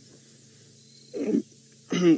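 Low steady background hum, then about a second in one short voiced sound from a person, like a throat-clear or brief utterance, just before speech begins at the very end.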